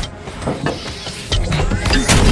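Action-film soundtrack: dramatic score mixed with fight sound effects, several short impacts, the loudest hits coming from about one and a half seconds in.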